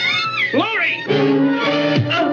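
A woman's high, wavering screams and cries that glide up and down in pitch. About a second in they give way to sustained, dramatic film-score music.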